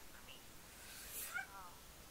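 A faint, brief, high-pitched vocal whine that falls in pitch about a second and a half in, just after a short breathy hiss.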